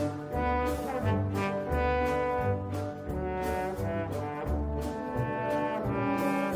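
Foxtrot played by a band in which brass carries the melody in held notes over a regularly pulsing bass line.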